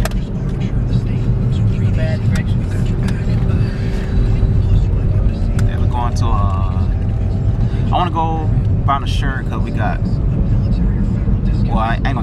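Steady low rumble of a car's engine and road noise, heard from inside the cabin while driving, with brief snatches of voice.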